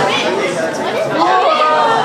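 Audience chatter: many voices talking over one another in a large room.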